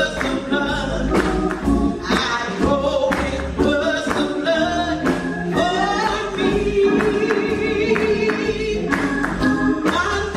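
Gospel singing by a church choir with instrumental accompaniment, including a long held note in the second half.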